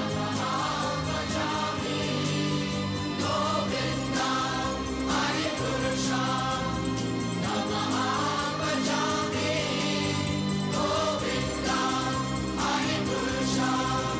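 Devotional choral music: a choir of voices singing slowly over sustained low drones, with a light strike every couple of seconds.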